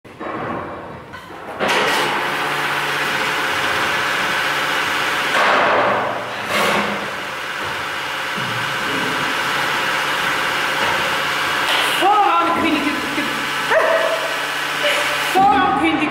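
Loud, steady hiss and hum of barrel-cleaning equipment worked on an oak wine barrel, starting about a second and a half in. A voice calls out over it in the last few seconds.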